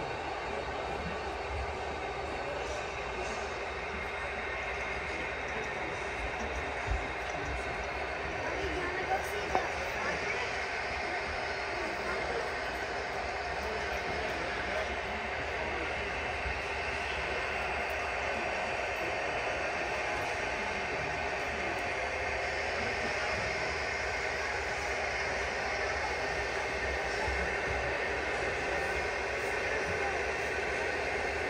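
A long model coal train, a string of about 90 hopper cars, rolling steadily along the track, with a crowd talking in the background.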